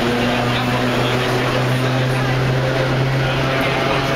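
Vintage New York City subway car running: a steady rumble with a low hum that rises slightly in pitch.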